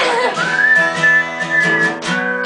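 Acoustic guitar strummed in a steady rhythm, with a high whistled note that slides up about half a second in and is held for about a second and a half.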